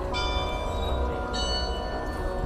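Church bell struck twice, about a second apart, each stroke ringing on.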